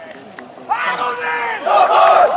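A group of young men's voices shouting a long, drawn-out team cheer in unison, starting a little under a second in, with a second shout beginning near the end.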